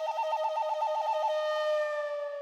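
Soundtrack sting: a single pitched tone trilling rapidly between two notes, about ten times a second, then settling on the lower note and holding it as it begins to fade.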